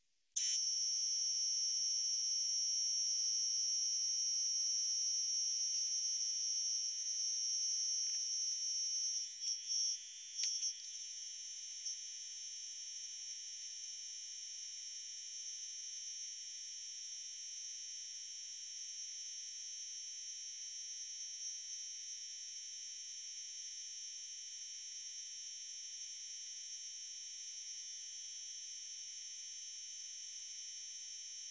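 Compressed-air paint spray gun running, a steady high hiss and whistle that starts suddenly about half a second in. It breaks off and restarts a few times around ten seconds in, then carries on more quietly.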